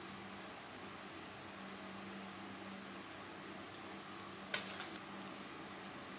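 Quiet room tone with a steady low hum, and faint handling of potting soil as gloved fingers press it gently around crassula offsets in a small plastic pot; one brief sharp rustle about four and a half seconds in.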